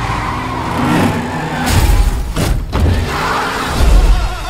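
Car engines revving as cars drift through smoky burnouts, mixed with trailer sound effects. A rushing swell comes about two seconds in and cuts out briefly, followed by deep booming hits, the loudest near the end.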